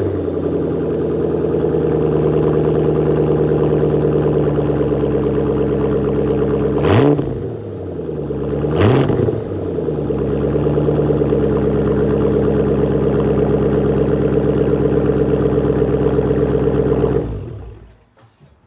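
Roush Mustang's 4.6-litre three-valve V8 idling through its quad-tip Roush exhaust, blipped twice in quick succession around the middle, each rev rising and falling back to idle. The engine is switched off near the end and the sound dies away.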